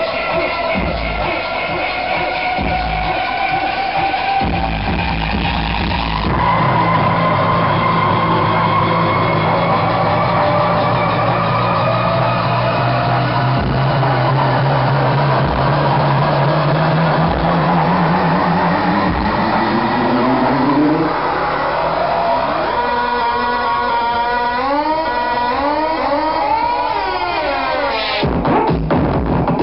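Loud tekno/breakbeat dance music played through a festival sound system. The kick drum drops out about six seconds in for a breakdown of held synth tones. A slow rising pitch sweep follows, then a run of wobbling, gliding synth lines near the end as the track builds back toward the beat.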